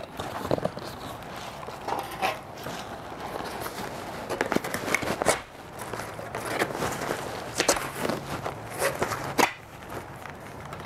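Corrugated cardboard box being cut and folded by hand into flat sheets: irregular scraping, crackling and sharp taps throughout.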